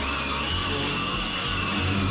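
Makita circular saw cutting through glued-down flooring, a steady high whine under load.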